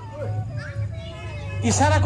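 A man speaking, pausing and then resuming near the end, over a steady low electrical hum.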